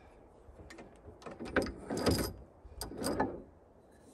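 Small benchtop wood lathe's tailstock being wound back by its handwheel and the turned wooden stick taken off between the centres: a few irregular mechanical clicks and scrapes.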